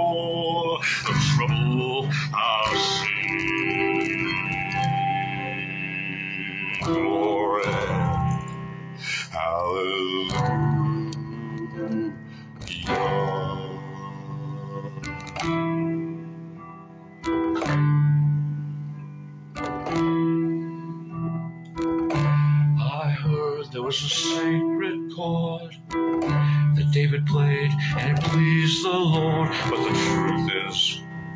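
Guitar picked and strummed through a run of chords, with a man's voice holding long wordless sung notes over it at times.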